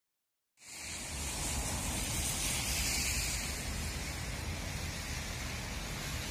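Steady outdoor background noise, an even hiss with a low rumble beneath it, starting abruptly about half a second in.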